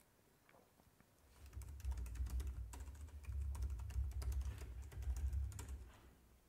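Typing on a computer keyboard: a quick, uneven run of keystrokes that starts about a second and a half in and goes on for about four seconds, each stroke a short click over a dull low thud, as a terminal command is typed and entered.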